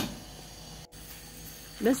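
A sharp click at the very start, then a faint steady hiss from a stainless steel pot of water simmering on a gas stove with grape leaves in it.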